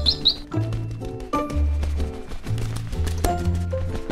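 Background music for a children's cartoon: a light tune over a bass line of steady held notes.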